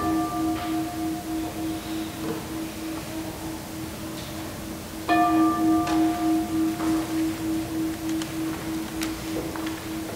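A singing bowl ringing with one clear tone that pulses slowly as it fades, then struck again about five seconds in and ringing on, marking a time of silent prayer.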